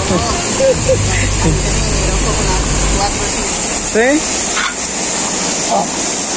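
Steady rush of a waterfall pouring into a rock pool, with voices over it and a low rumble for about two seconds near the start.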